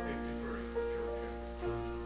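Piano playing the slow opening chords of a hymn, held notes that change every half second or so.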